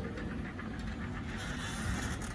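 Cantilever umbrella being opened and raised on its gas-lift arm: the fabric canopy rustling as it spreads, with small ticks from the frame, a little louder in the second half.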